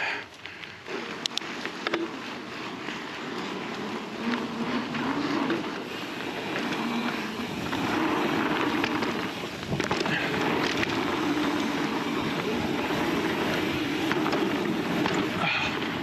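Fezzari La Sal Peak mountain bike riding a dirt trail: tyres rolling over packed dirt with wind noise on the microphone, a few short knocks and rattles from the bike, and louder riding noise in the second half.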